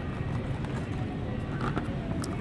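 Plastic blister pack of screwdrivers knocking and crinkling as it is handled and lifted off a pegboard hook, over a steady low hum of store background noise.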